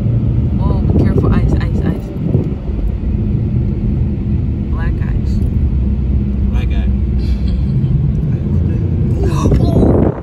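Steady low rumble of a car's engine and tyres heard from inside the cabin while driving. Brief voices come through about a second in and again near the end.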